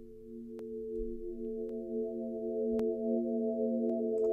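Sustained synth pad drone from Ableton's Wavetable synth with reverb, held as a chord of several notes stacked by MIDI pitch-shifted copies. Higher notes join about a second in and the chord slowly swells. Faint clicks come about once a second.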